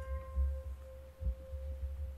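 A mandolin's last plucked note ringing out as one steady tone and slowly fading away, with an uneven low rumble underneath.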